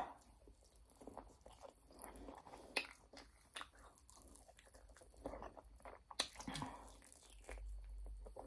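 Faint, close-up biting and chewing of a chicken wing: small irregular crunches and clicks as the meat is gnawed off the bone.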